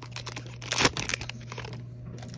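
Silver foil wrapper of a Mosaic soccer trading-card pack crinkling and crackling as it is torn and handled. The crackles are loudest a little under a second in and thin out later, over a steady low hum.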